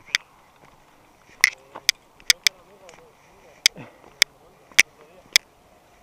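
Sharp, irregular clicks and knocks, about nine in six seconds, from a mountain bike and its point-of-view action camera jolting along a rough dirt trail. A faint voice talks in the background.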